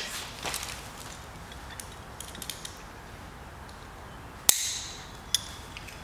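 Climbing hardware being handled: a few faint small clicks, then one sharp metallic click of a carabiner with a short ring about four and a half seconds in.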